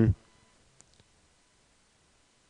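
Quiet room tone with two faint, short clicks about a second in, during a pause while an equation is being written out.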